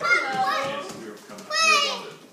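Children's high-pitched voices calling out at play, in two bursts: one at the start and a shorter, higher one near the end.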